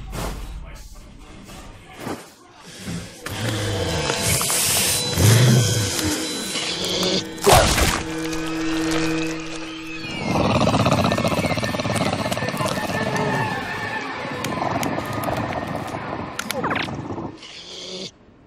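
Horror film soundtrack: eerie music and sound effects, with a sharp hit about seven and a half seconds in and a low held drone after it. From about ten seconds a loud, harsh, dense surge lasts several seconds before it drops away near the end.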